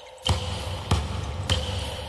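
Trailer sound design: three deep, evenly spaced hits, about 0.6 s apart, over a steady held drone.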